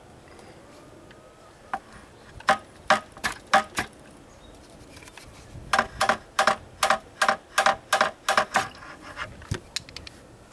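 A metal buckshot mold being struck to knock freshly cast lead balls out of its cavities. The strikes make sharp, ringing metallic clinks: a handful spaced apart, then a quicker run of about ten.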